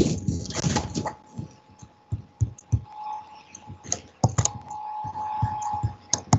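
Typing on a computer keyboard: irregular keystroke clicks, some in quick pairs, over a faint steady hum.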